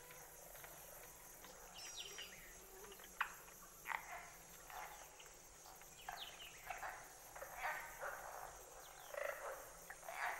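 Faint Everglades wildlife field-recording soundscape: a steady insect buzz with a fine high ticking. From about three seconds in, short animal calls sweep downward, one or two a second.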